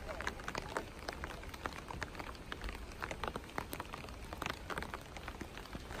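Light, steady rain with a dense, irregular patter of separate drops.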